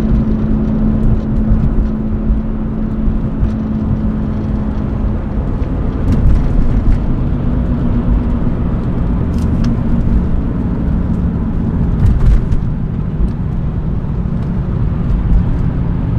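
Cabin sound of a 1997 BMW E36 M3's S52 naturally aspirated straight-six pulling under acceleration, automatic gearbox in sport mode, over steady road and tyre rumble. The engine note changes about six seconds in and again near twelve seconds.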